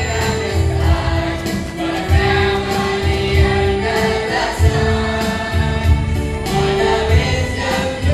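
A school choir of children singing together into microphones, holding long notes over an accompaniment with a steady low beat.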